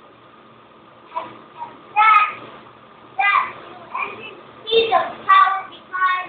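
A young child's voice in short, high-pitched vocal bursts with no clear words, starting about a second in, over a faint steady hum.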